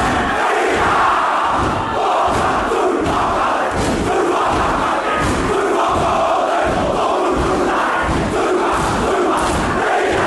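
A large group of schoolboys performing a haka: many voices shouting the chant in unison over a steady beat of stamping and body slaps.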